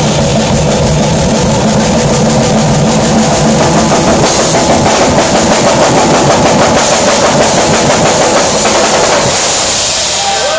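Three acoustic drum kits, among them a Ludwig and a DW, played together in a loud, dense improvisation, with cymbals ringing over the drums throughout.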